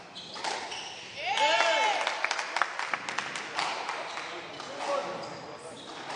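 Squash rally on a show court: a string of sharp knocks of the ball off racket and walls. A short high squeal comes about a second in, and a fainter one near the end.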